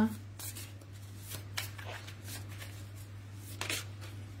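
Tarot cards being shuffled and handled, a run of soft brief rustles and taps with a louder one near the end, over a steady low hum.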